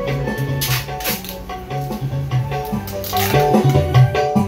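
Recorded music with a pulsing bass line and steady percussion, played loud through line-array speakers with single 12-inch drivers.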